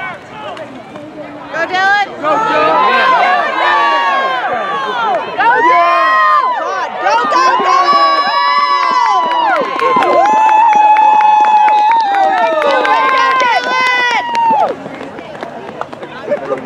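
A crowd of spectators and sideline players yelling and screaming together, many high voices held long and overlapping. It swells about a second and a half in, stays loud, and dies down shortly before the end.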